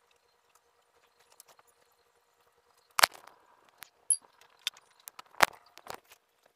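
A scatter of sharp knocks and clicks, typical of handling noise. The two loudest come about three seconds in and about five and a half seconds in, with a few lighter clicks between them, over a faint steady hum.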